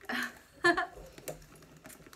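Rummaging through a handbag: a scattered run of small clicks and taps as items inside are moved about.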